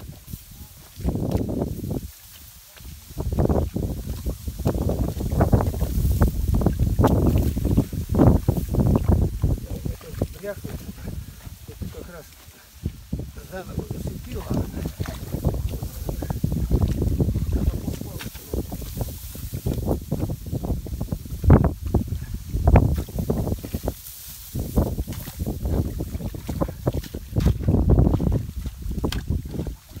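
Shovel digging, scraping and slapping wet mud and clay in uneven strokes, with a few sharper knocks a little past the middle, and wind on the microphone.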